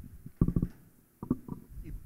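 A man's voice through a microphone: two short, low utterances or hesitation sounds, with pauses between them.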